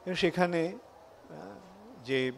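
Only speech: a man lecturing into a microphone. He says a short phrase, then a softer drawn-out word.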